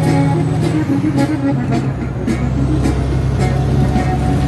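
Steady low drone of a semi-truck's engine and road noise heard inside the cab at highway speed, under a Spanish-language song with a regular beat playing on the stereo.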